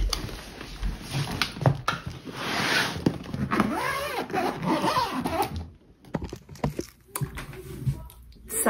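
A packed hard-shell suitcase being shut and zipped closed: a long zipper rasp in the middle whose pitch wavers as the pull goes round the case, then a few light clicks and knocks near the end.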